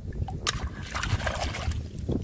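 Water splashing and dripping as a small die-cast toy forklift is lifted by hand out of a tub of water, with a sharp splash about half a second in.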